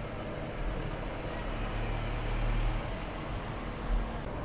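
Low, steady background rumble with a faint steady hum, swelling slightly in the middle.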